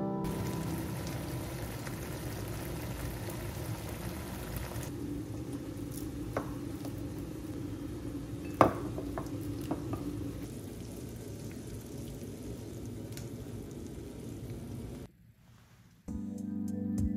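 Kitchen sounds of rice being served: a low, steady sizzling hiss, with a few sharp clicks of a plastic rice paddle against a ceramic bowl, the loudest about eight and a half seconds in.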